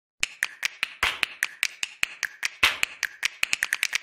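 A quick, even run of sharp snapping clicks, about five a second, a few of them fuller with a short ring.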